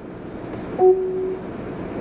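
A single short electronic beep, one steady tone lasting about half a second near the middle, from the SUV's touchscreen infotainment system as it is tapped. It sits over the steady hiss of the cabin climate-control fan.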